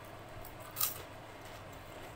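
One sharp crunch of a crisp fried snack being bitten, a little under a second in.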